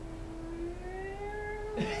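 A person singing one long held note that drifts slowly upward in pitch, as part of a comic sung 'ding… strings' imitation of a song; the next sung 'ding' starts near the end.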